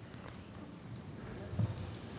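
Children moving about and settling onto a carpeted step: faint shuffling and footsteps, with one dull thump about three-quarters of the way through.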